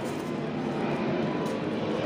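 Steady rushing noise of riding along a paved street beside a bicycle: wind on the microphone and tyres rolling, with no distinct tones or knocks.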